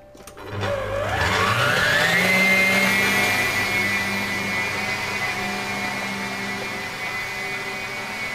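Electric stand mixer whisking eggs: the motor starts about half a second in, its whine rising in pitch for about two seconds as it speeds up, then runs steadily at high speed.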